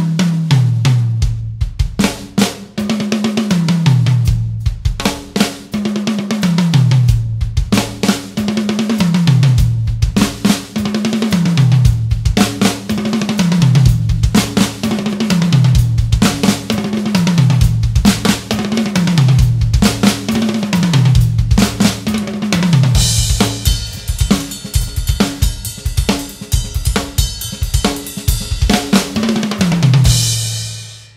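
Pearl Masterworks drum kit: a fast fill run down the toms from high to low, played over and over about every two seconds, with kick and snare strokes between. In the last several seconds cymbals ring out over the drumming.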